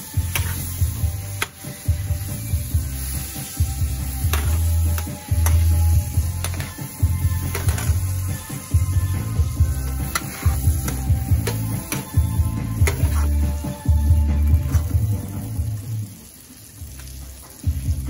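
Butter melting and sizzling in a nonstick frying pan, stirred with a metal spoon that clicks against the pan now and then. Background music with a pulsing bass line plays over it.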